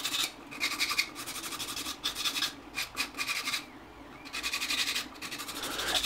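A sanding stick rasping back and forth in quick strokes on the cut edge of a plastic tape dispenser, smoothing away the jagged lines left by a spinning cutting blade. The strokes stop briefly a few times, with a longer pause about two-thirds of the way through.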